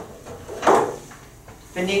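A light tap of chalk on a blackboard, then one louder short knock about two-thirds of a second in, and a man's voice starting near the end.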